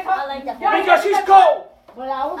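People talking in a room, with no words clear enough to make out, and a short pause near the end.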